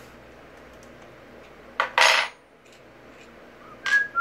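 Skateboard truck hardware handled while a wheel is taken off the axle: a click, then a short metallic clink-clatter about two seconds in, and another click near the end.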